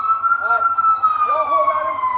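Emergency vehicle siren wailing, its pitch peaking about half a second in and then slowly falling.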